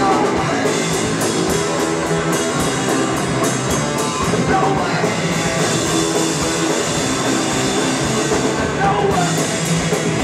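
A rock band playing live, with electric guitars and a drum kit, cymbals struck on a steady beat.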